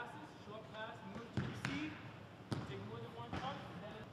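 About four sharp thuds of soccer balls being kicked and struck during goalkeeper shot-stopping practice, in a large echoing hall. Voices call out in the background.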